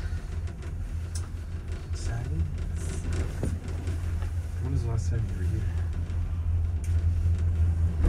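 Gondola cabin riding along the haul rope, heard from inside: a steady low hum and rumble, with a few short clicks and rattles around the middle as it passes a lift tower.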